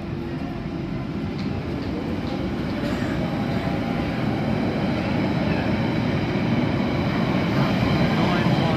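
London Underground Central line 1992 Stock train pulling out of the platform and gathering speed. Its running noise grows steadily louder.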